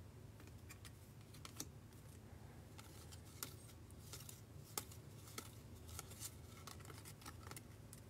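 Faint, irregular clicks and slides of baseball trading cards being flipped through by hand, one card pushed off the stack at a time, over a low steady hum.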